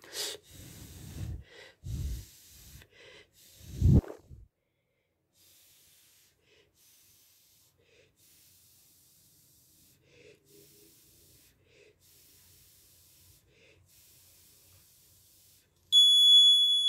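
A person blowing hard, breathy exhalations onto an LM35 temperature sensor to warm it, several blows close to the microphone in the first four seconds. After that there is near silence with faint hiss.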